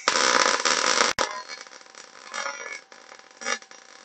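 MIG (gas metal arc) welding arc running on a steel plate. It is loudest in the first second after the arc is struck, breaks off for an instant, then carries on quieter and uneven with a few louder swells.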